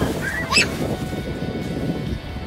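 A child's short, high-pitched shriek, rising sharply about half a second in, over water splashing in the lake shallows.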